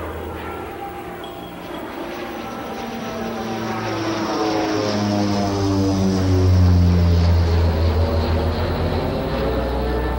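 Airplane flying over: an engine drone that grows louder to a peak about six to seven seconds in, its pitch dropping as it passes, then easing off.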